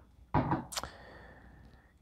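A glass whisky bottle set down on a hard surface: a thunk, then a sharper clink, with a faint, thin ring fading after it.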